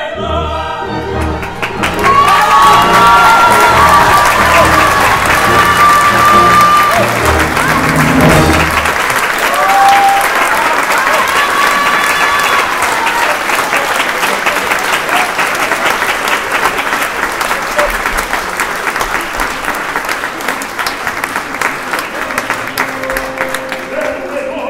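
Audience applauding over the orchestra's closing bars of a sung duet; the orchestra stops about nine seconds in and the applause goes on alone, slowly dying down.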